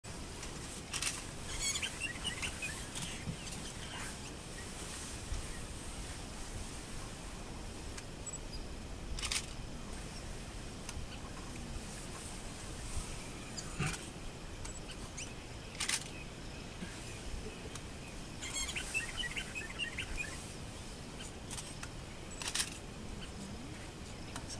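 Open-air ambience with small birds chirping in two short bouts, one near the start and one about three-quarters through, over a steady background hiss, with a few sharp clicks scattered through.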